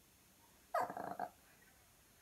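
Small dog giving one short growling bark, about half a second long, a little under a second in.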